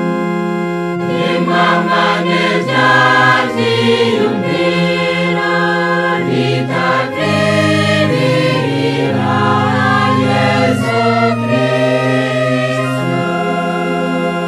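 Choir singing a sacred hymn over sustained organ chords; the voices come in about a second in and drop out near the end, leaving the organ holding a chord.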